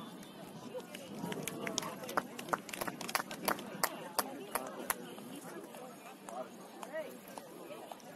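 Distant voices of players and onlookers calling out across an open soccer field. A run of a dozen or so sharp, irregular clicks or taps comes through in the middle.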